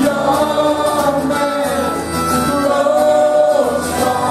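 Punk rock band playing live, with several voices singing together in held notes over the band.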